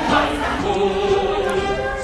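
Music with many voices singing together in long held notes.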